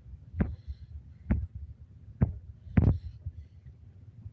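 Four dull thumps, irregularly spaced, over a steady low rumble: handling bumps or taps on a handheld phone's microphone.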